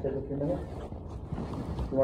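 A man's voice breaking as he cries, choked, wordless sounds over a low rumble, as he is overcome with emotion.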